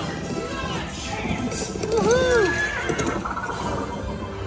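Dark-ride soundtrack with a cartoon horse whinnying, a rising-and-falling call about two seconds in, over the ride's music and effects.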